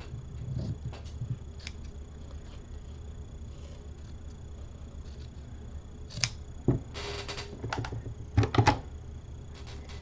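Scissors snipping excess lace fabric: a few sharp clicks and a short rasping cut in the second half, with a louder cluster of clicks near the end, over a low room hum.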